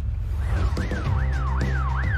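A police car siren on its fast yelp setting starts about half a second in, sweeping rapidly up and down about three times a second. It plays over background music with a steady low bass.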